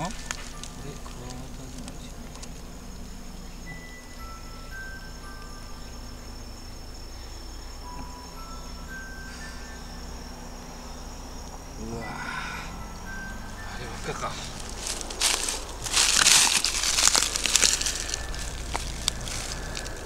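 Rustling and crackling of dry bark and leaf litter being disturbed at the foot of a tree, loudest for about five seconds near the end, over a faint steady high-pitched drone.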